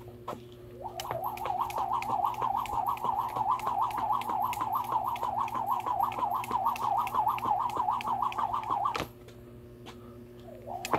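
Jump rope turning steadily, whirring through the air with a regular slap on the ground, about three turns a second. It stops about 9 seconds in.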